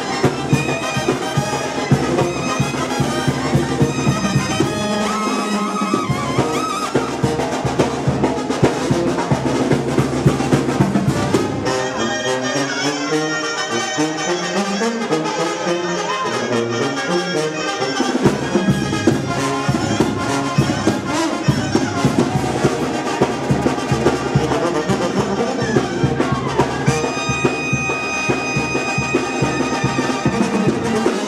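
Banda sinaloense recording with a brass section of trumpets and trombones over percussion. A run of moving low brass notes comes near the middle.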